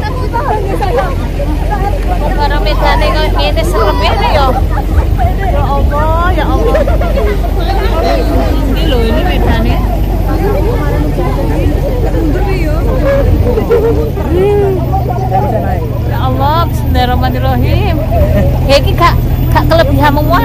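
The steady low hum of a vehicle engine carrying a group, its note shifting up about two-thirds of the way through, under continuous overlapping chatter of many voices.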